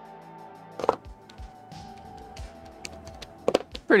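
Soft background music of sustained tones over low thuds. A sharp knock about a second in and a couple more near the end come from a cardboard drawing board and a pen being set down on a wooden desk.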